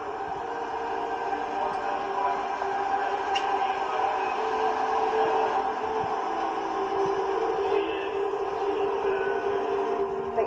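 A steady drone of several held tones, shifting pitch slightly a couple of times, from the exhibit display's video soundtrack.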